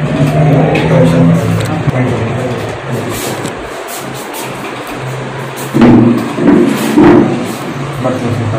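A siren wailing, its pitch rising over the first couple of seconds, with people talking over it; loud voices near the end.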